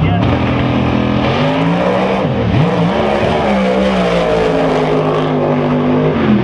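Outlaw 10.5 drag race cars launching from the line and running at full throttle down the strip. The engine note climbs, then stumbles and dips about two seconds in as one car hits tire shake right out of the hole, before it pulls again.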